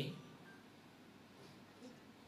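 Faint room tone in a pause between a man's spoken phrases, with the end of a word just at the start.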